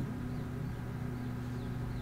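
A steady low hum with a faint hiss behind it, unchanging throughout. This is background hum picked up by the recording, not any sound from the on-screen render.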